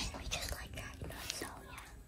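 A child whispering quietly, close to the microphone.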